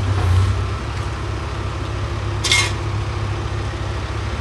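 Diesel engine of road-repair machinery running steadily with a deep rumble, with one brief hiss about two and a half seconds in.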